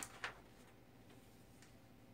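Near silence: room tone, with two short faint ticks right at the start.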